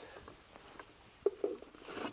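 Quiet handling sounds from an equipment case: faint ticks and one sharp click a little past the middle, then a rustle of paper near the end as the manuals are drawn out.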